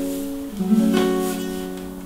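Nylon-string classical guitar and ukuleles playing together: a chord is strummed about half a second in and left ringing, slowly fading.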